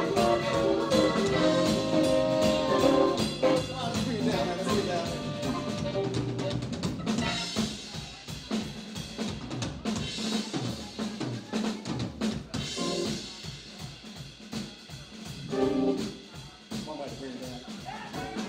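Live band playing an instrumental passage: the two tenor saxophones hold loud sustained notes over the band at the start, then the drum kit comes to the fore with busy hits under electric guitar and keyboard. The horns come back in briefly near the end.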